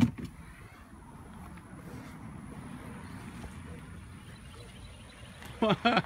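A steady low rumble of an SUV driving slowly up and pulling into a gravel driveway, after a sharp knock at the very start.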